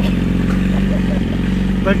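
Yamaha R6 sport motorcycle's inline-four engine idling steadily right beside an open car window.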